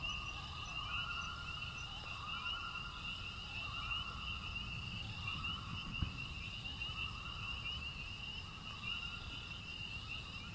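Night-time nature ambience of insects trilling in a fast, steady chorus, with a lower call repeating in phrases of about a second, over a low rumble. A single soft thump comes about six seconds in.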